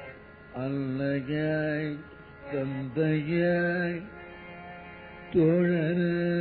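Devotional singing: a voice holds long notes in three phrases with gliding ornaments, the last beginning about five seconds in.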